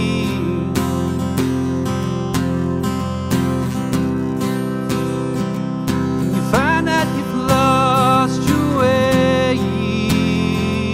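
Acoustic guitar strummed in a steady rhythm. In the second half a man's voice sings over it, sliding up into long, wavering held notes.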